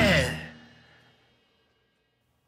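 A loud punk rock song ending: the full band cuts off about a quarter second in, after a falling pitch at the very start, and the last chord rings out and fades to silence within about a second.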